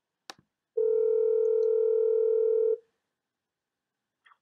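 A telephone line click, then a single steady phone tone held for about two seconds before it cuts off.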